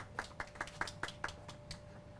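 Light applause: a small crowd's scattered hand claps, about four or five a second, dying away near the end.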